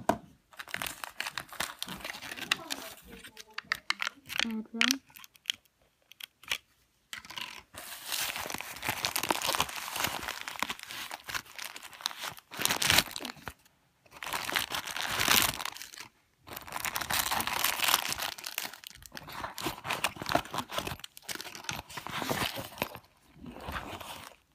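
Rustling and crinkling from handling a fabric first-aid bag and the packaged items inside it, in several long stretches with short pauses between them.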